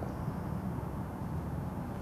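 A pause in the talk filled only by a steady, low background rumble.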